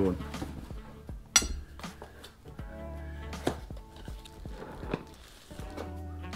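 Clicks and light rustling of a small item being unwrapped from its packaging by hand, with one sharp click about a second and a half in, over soft background music.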